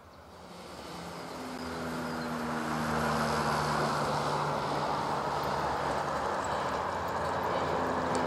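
Crop-dusting plane's single piston engine and propeller flying low overhead, growing louder over the first few seconds as it comes in, then holding steady.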